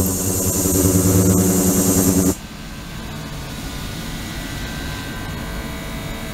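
Ultrasonic cleaning tank with submerged stainless-steel transducer boxes running in water: a loud steady hum made of many even tones with a high hiss over it. A little over two seconds in it drops abruptly to a much quieter steady hum with a few thin tones.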